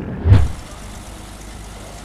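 A short, loud, low thump about a third of a second in, then a steady low vehicle engine rumble.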